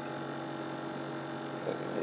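Steady low hum.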